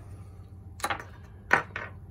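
Two sharp clicks of small metal parts knocking together at a bench vise, the second about half a second after the first, followed by a few fainter clicks.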